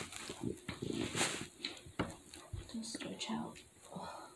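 A woman's brief effort sounds and breaths amid rustling and several light knocks as she moves into a hands-and-knees position on the floor.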